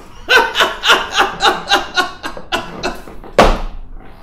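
An elderly man laughing heartily in quick, rhythmic bursts, about four a second. Near the end comes a single loud burst, the loudest sound here.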